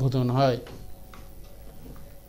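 A narrator's voice ends about half a second in, followed by quiet background noise with faint, scattered clicks.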